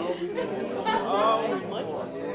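Several voices praying aloud at once, overlapping into an indistinct chatter with no single clear speaker.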